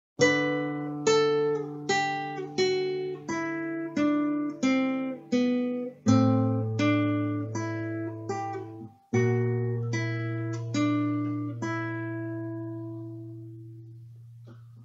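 Nylon-string classical guitar played slowly, finger-plucked single melody notes about one every three-quarters of a second over sustained bass notes that change twice, the last notes left ringing and fading away.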